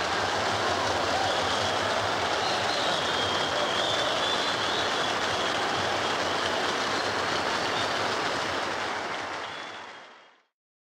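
Audience applauding steadily after the concerto's final chord, fading out near the end.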